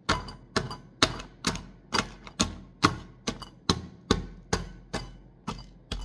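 Rolling pin pounded end-down into a stainless steel bowl, crushing Oreo cookies: a steady run of sharp knocks, about two a second.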